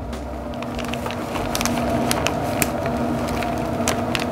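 A steady mechanical hum with scattered light crackles and taps as shredded cheese is shaken from a plastic bag into an aluminium foil pan.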